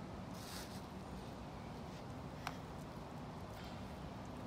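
Quiet outdoor background noise, a steady low rumble, with a brief hiss just after the start and a single light click about two and a half seconds in.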